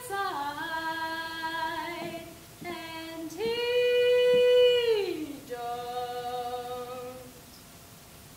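A woman singing unaccompanied in long held notes. The loudest note, held from about three and a half seconds in, slides down in pitch at its end, and softer notes follow and fade out near the end.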